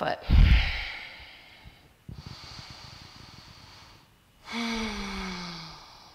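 A woman breathing heavily: a loud exhale that blows on the microphone just after the start, quieter breathing, then a long voiced sigh that falls in pitch near the end.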